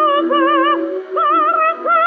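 A female operatic singer singing sustained notes with a wide, even vibrato over a lower held accompaniment line, with a short break about a second in before the next phrase. The sound is that of an old recording, thin, with no deep bass or high treble.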